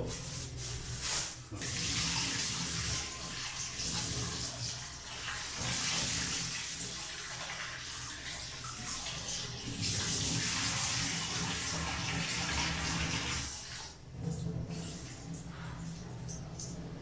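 Kitchen tap running into a stainless-steel sink as raw chicken pieces are rinsed under it by hand, the splashing rising and falling. The water stops near the end.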